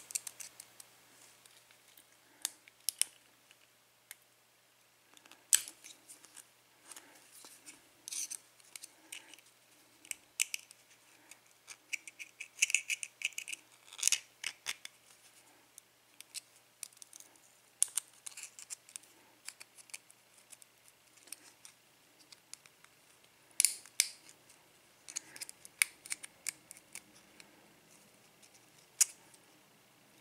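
A metal lock pick and tools working in a picked pin-tumbler lock cylinder: scattered small metallic clicks and scratchy scrapes, irregular. There are busier runs of scraping about halfway through and again a few seconds later, as the plug is held turned so it does not lock back up.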